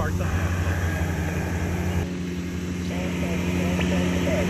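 A steady low motor-like hum over hiss, with a faint voice of a calling station coming through the radio's speaker about three seconds in.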